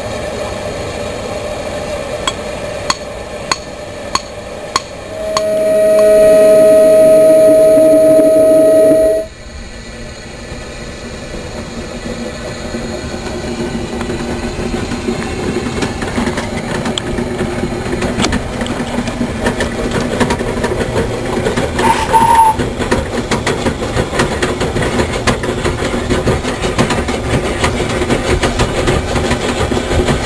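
A steam narrowboat's whistle sounds one long steady blast of about four seconds, just after a few sharp knocks. After the whistle, a steady running noise from the steam plant grows slowly louder.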